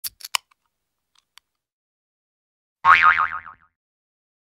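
Cartoon intro sound effects: three quick pops at the very start, then a springy boing whose pitch wobbles up and down, about three seconds in and fading within a second.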